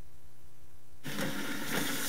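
A steady low hum, joined about a second in by the hiss and faint rustle of a lecture hall's room tone picked up by the microphone.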